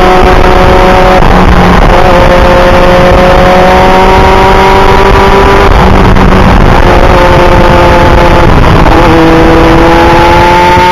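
Kawasaki Ninja motorcycle riding at speed, its engine and exhaust through a Norton muffler heard from onboard. The pitch climbs steadily as it pulls, with brief dips where the throttle eases, about a second in, near the middle and near the end. Loud wind noise on the microphone runs underneath.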